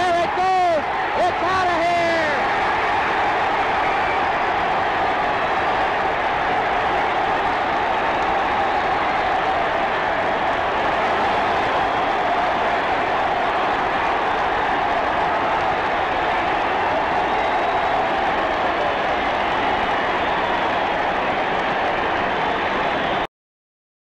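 Baseball stadium crowd cheering and applauding a home run, a dense steady roar that runs on without a break. A broadcaster's excited call rises over it in the first two seconds.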